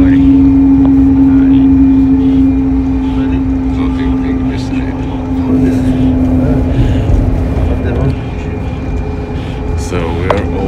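Coach bus heard from inside the cabin: a steady engine drone with a strong held hum over low road rumble. The hum weakens near the end.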